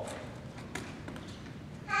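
A few faint taps and handling knocks, about three brief ones, as musket-loading gear is handled in a quiet room.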